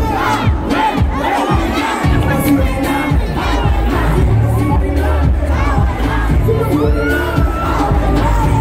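A dense concert crowd shouting and singing along, many voices at once, over loud music with a heavy bass.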